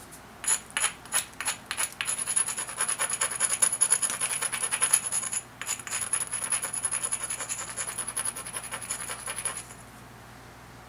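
Edge of a banded obsidian knife being abraded with a hand-held stone: a few separate scraping strokes, then a fast, steady run of rubbing strokes with a short pause about midway. A thin high whine rides over the rubbing.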